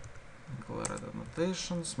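A few keystrokes on a computer keyboard as a line of code is typed and completed. A man's voice starts about two-thirds of the way in.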